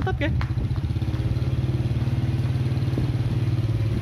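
Single-cylinder four-stroke engine of a Honda Supra Fit 110cc underbone motorcycle, converted into a homemade reverse trike, running steadily at low speed with a fast, even putter from its exhaust.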